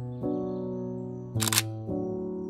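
A single camera shutter release, a short sharp click about one and a half seconds in and the loudest sound, over background music with sustained keyboard chords.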